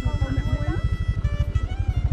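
Small motorcycle engine running with a rapid, even low throb, under people's voices.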